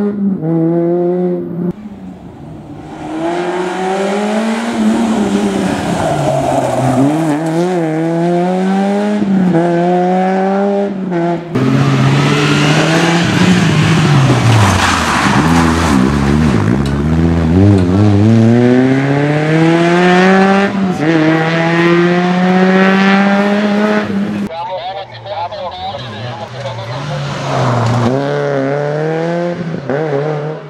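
Peugeot 106 N2 rally car engine revved hard through the gears in several separate passes, the pitch climbing in each gear and dropping at every shift or lift off the throttle, the sound cutting sharply from one pass to the next.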